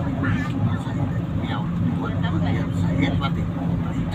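Steady engine hum and road noise heard inside the cabin of a moving bus, with voices talking in the background.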